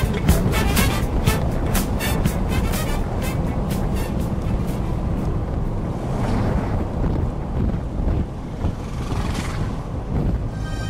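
Background music with a steady beat that fades out about three seconds in, leaving steady road and engine noise inside a moving vehicle, which swells twice near the end.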